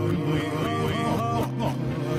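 A pop song played backwards: reversed vocals sliding up and down in pitch over the reversed backing track.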